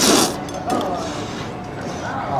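A man slurping a mouthful of Lanzhou beef noodles: a loud slurp right at the start, then quieter chewing and mouth noises.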